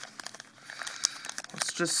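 Foil wrapper of a Magic: The Gathering booster pack crinkling as fingers work it open, a run of fine crackles that starts about half a second in and grows to a brighter rustle near the end.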